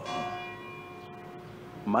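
A church bell struck once, its ringing tone fading away over about a second and a half.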